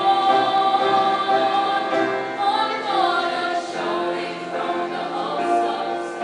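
A female choir singing a sacred song in harmony, holding long notes that shift to new chords partway through.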